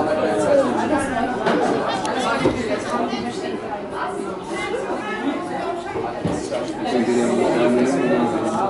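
Several spectators talking at once near the camera, overlapping conversational chatter with no single clear voice.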